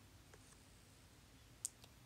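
Near silence: room tone, with one short, sharp click about one and a half seconds in and a couple of fainter ticks.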